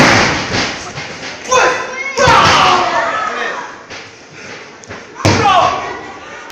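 Heavy thuds of wrestlers' bodies hitting the ring mat, one at the start and another about five seconds in, with spectators shouting in between.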